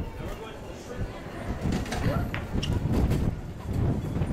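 Indistinct voices of passers-by mixed with general outdoor background noise and a low rumble, no single voice clear enough to make out.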